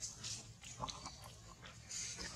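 Macaque biting and chewing fruit: short, irregular crunchy clicks.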